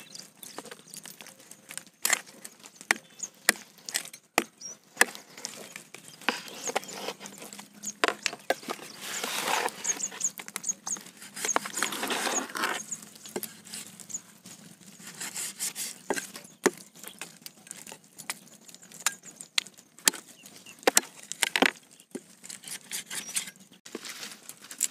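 Meat cleaver chopping raw turkey pieces on a wooden log: irregular knocks as the blade cuts through the meat into the wood. A stretch of steadier noise comes about ten seconds in.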